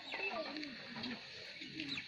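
Faint bird calls during a pause in the speech.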